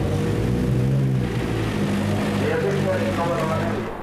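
Toyota Corolla WRC's turbocharged four-cylinder engine running at low revs as the car rolls slowly, the revs swelling briefly in the first second, with voices over it.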